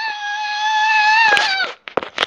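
A young child's voice holding one long, high-pitched note that drops in pitch and breaks off about one and a half seconds in.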